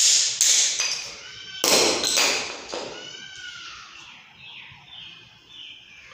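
Hard knocks and clatter of small support pieces being set down and pressed against a granite slab's edge strip. There are two loud strokes, one at the start and one a little under two seconds in, with lighter ones around them, then only faint sounds.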